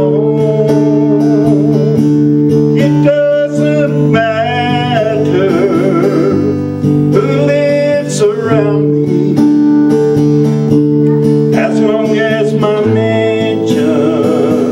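Acoustic guitar strumming chords in a slow country gospel tune, with a wordless melody line that wavers in pitch held over it.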